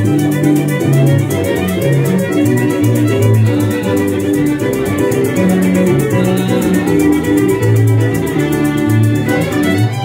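Two violins playing a lively tune together, over an electric bass line, strummed guitar and shaken maracas.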